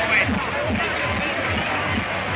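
A large outdoor crowd talking and shouting together, over amplified music with a steady bass beat of about four strokes a second.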